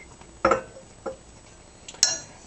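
A metal spoon knocking against a glass serving bowl: a sharp click about half a second in, a fainter one about a second in, and another right at the end.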